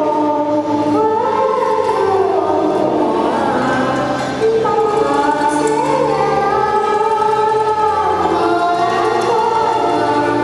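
A boy singing a song into a handheld microphone over a recorded karaoke backing track, in long held, gliding melodic notes.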